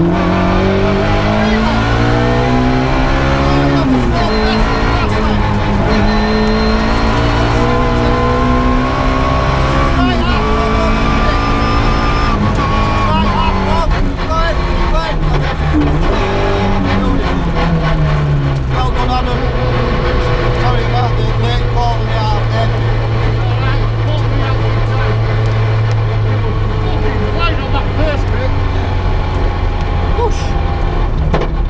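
Ford Puma 1.6 rally car's four-cylinder engine heard from inside the cabin, revving hard through the gears: the pitch climbs, drops at a gear change about four seconds in, climbs again to a peak around twelve seconds, then falls and holds a steady lower note for the last third.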